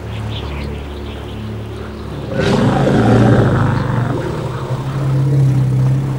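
Tense film music with low held notes, then about two and a half seconds in a sudden, loud, deep bellow from the animated woolly mammoth, its low tone sounding on over the music until the end.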